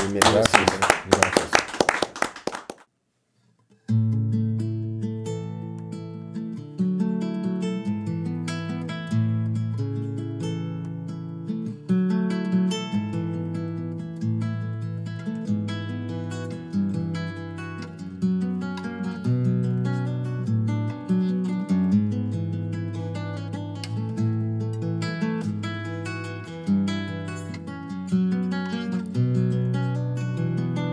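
Two people clapping for about three seconds, then a moment of silence, then a classical guitar plucking a slow instrumental introduction of single notes and chords.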